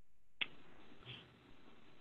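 A single faint click about half a second in, followed by a low steady hiss from an open microphone line on a video call.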